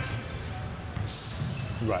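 Basketball bouncing on a hardwood gym floor, a low irregular patter of thumps, with a man saying "right" near the end.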